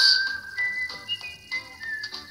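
High, thin whistle-like tones in an edited sound effect: one note is held, and higher notes join it in steps, all stopping together after about a second and a half. A single lower note follows near the end.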